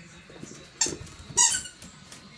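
A puppy's toy ball squeaking twice as he bites and bats it, two short squeaks a little over half a second apart, the second the louder.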